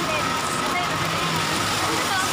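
Steady road traffic noise with women's voices chatting over it.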